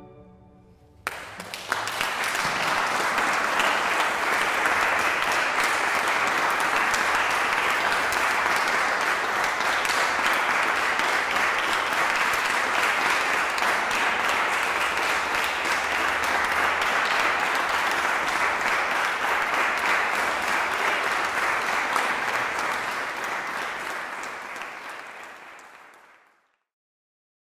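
Audience applauding, starting about a second in after a brief hush, holding steady and then fading out near the end.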